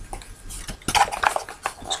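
Cardboard and plastic packaging of a camera box being handled: a scatter of light clicks, taps and rustles, busiest about a second in.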